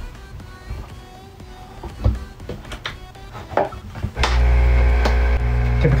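Hot-air rework heat gun switching on about four seconds in and running with a steady, loud blower hum, after a couple of short knocks from handling.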